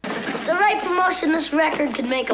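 Speech: TV-show dialogue that cuts in suddenly out of near silence, with no music under it.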